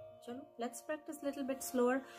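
A woman's voice speaking softly, with no drum strokes, over a faint steady ringing tone.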